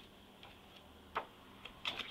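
Sheets of a scrapbook paper pad being turned one by one, each page giving a short crisp snap; the loudest come about a second in and near the end.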